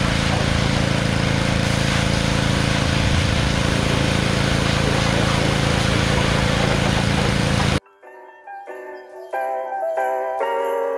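Gas pressure washer with a Honda GC190 single-cylinder engine running steadily, the engine's hum under the hiss of the water spray. It cuts off suddenly about eight seconds in, and light music with chiming, mallet-like notes follows.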